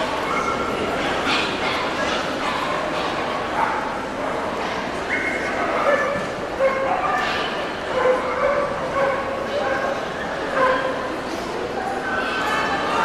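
Dogs barking, with short calls scattered throughout, over steady crowd chatter in a large hall.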